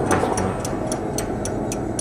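Regular ticking, about four ticks a second, over a steady low rumble, as in the soundtrack of a new-media art piece.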